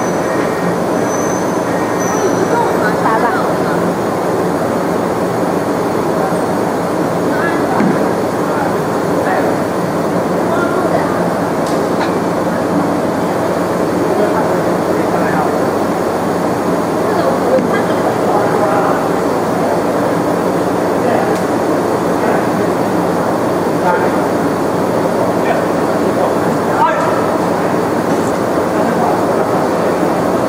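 Fiber laser marking machine running steadily as it marks a black-coated bottle turned on its rotary axis, a continuous even noise with a few faint clicks. Faint voices sit in the background.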